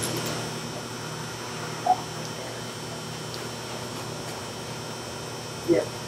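Steady background hum, with two brief faint sounds, one about two seconds in and one near the end.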